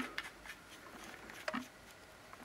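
Faint clicks and light scraping of a stub antenna being screwed by hand onto the threaded antenna connector of a Baofeng DM-5R handheld radio, with one slightly louder click about one and a half seconds in.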